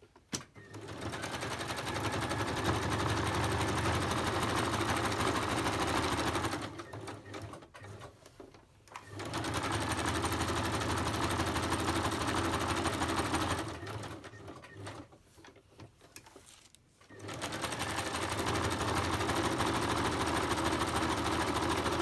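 Domestic electric sewing machine running a small zigzag stitch around a folded tab, in three steady runs of about five seconds each with short pauses between.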